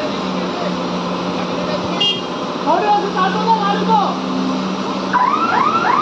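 Truck-mounted crane's diesel engine running steadily during a lift, with a steady low tone. About five seconds in, a warbling alarm starts, a rising sweep repeated about two to three times a second.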